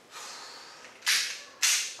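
A person breathes out sharply twice, about half a second apart, like heavy sighs, after a faint breathy hiss.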